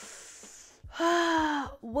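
A woman's audible breath in through the mouth, a soft hiss lasting under a second, followed by a drawn-out spoken word.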